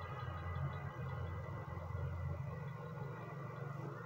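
Faint steady low background hum with light hiss, no other distinct sound.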